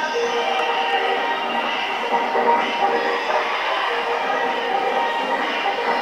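Recorded dance music playing steadily as the accompaniment to a group dance, thin, with little bass.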